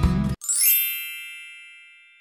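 Background music stops short and an added chime sound effect plays: a quick upward sweep into a bright ding that rings and fades away over about two seconds.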